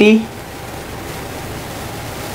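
Steady, even hiss of background room noise with no other events, after a brief spoken syllable at the very start.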